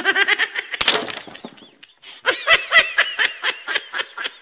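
A man laughing in quick bursts, with a brief crash-like noise about a second in, then a second run of high-pitched laughter from about two seconds.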